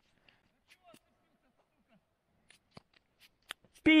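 Faint scattered clicks and rustles of a camera being handled and fitted. Near the end a loud, steady censor bleep starts.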